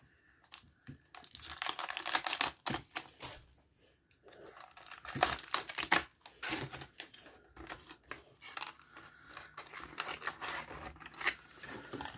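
Thin clear plastic packaging from a Disney Doorables blind box crinkling and tearing as it is handled and pulled open, in irregular crackly bursts with a short lull about a third of the way in, then softer rustling.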